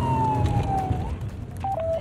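Police car siren: a single slow wail falling steadily in pitch, cutting off about halfway through, over a low rumble.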